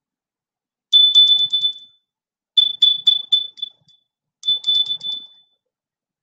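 High-pitched electronic beeping on one steady pitch, in three short bursts of rapid pulses, each burst fading away.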